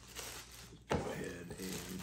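A clear plastic parts bag crinkling as it is handled, with a sharp tap about a second in, followed by a short vocal sound.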